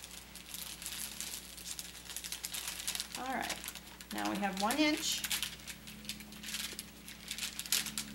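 Paper wrapper of a sterile glove package being unfolded and flattened by hand, crinkling and rustling throughout. A short voice sound is heard midway, the loudest moment.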